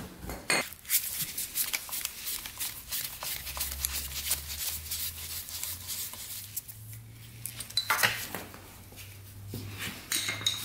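Screwdriver working a small screw out of a metal clamp on a motorcycle frame: repeated small metallic clicks and clinks of tool, screw and clamp, with a louder clatter of metal parts about eight seconds in.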